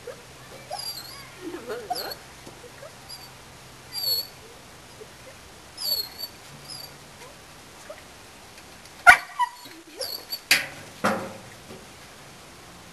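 A dog whining in short, high-pitched squeaky whimpers, several in the first half. Near the end, a few sharp knocks, the loudest sounds.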